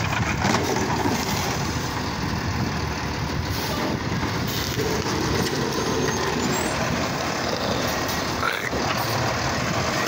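Automated side-loader garbage truck running at the curb, its engine and hydraulics working steadily as the side arm grabs a cart. Near the end the arm lifts the cart up over the hopper, and a brief rising whine comes shortly before.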